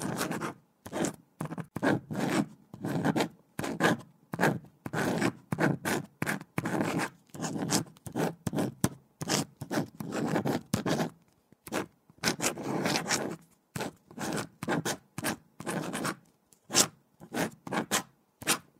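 A pen writing on paper: short scratching strokes, several a second, with brief pauses between runs of strokes.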